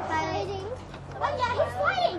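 Excited voices talking and exclaiming over a steady low hum.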